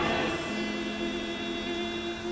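Church congregation singing together, holding one long chord that slowly fades.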